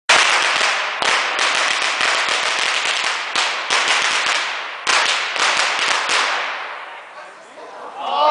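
A long string of red firecrackers going off in dense, rapid-fire bangs, with a brief break about a second in and another near five seconds, then thinning out and fading over the last two seconds.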